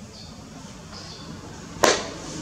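A single sharp crack near the end, much louder than anything else, over faint chirping of birds.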